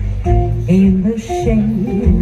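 Music: a melody of short held notes changing pitch every fraction of a second over a deep, steady bass.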